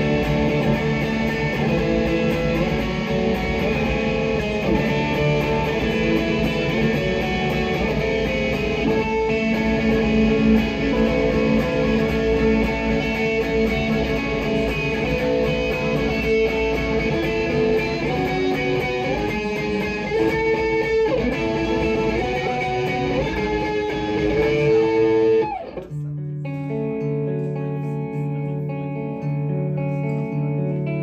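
Electric guitar playing live: a dense wash of sustained notes with some sliding pitches. About 25 seconds in, it drops abruptly to a cleaner, sparser pattern of held notes changing in steps.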